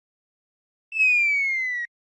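A cartoon sound effect: one whistle-like tone gliding slowly downward in pitch for about a second, starting near the middle and stopping abruptly, with silence before it.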